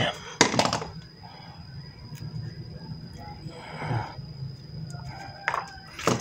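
Handling noise of wires and small metal parts: a short burst of clicks and rustle just under a second in, a rustle about four seconds in and a few light clicks near the end, over a steady low hum and a thin high-pitched whine.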